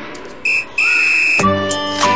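Two steady high-pitched beeps, a short one and then a longer one, in a break in the background music; the music comes back in at about one and a half seconds.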